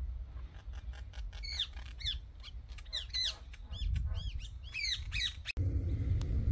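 A bird giving a rapid series of short, arching calls, several a second, over a low wind rumble on the microphone. The calls stop abruptly about five and a half seconds in.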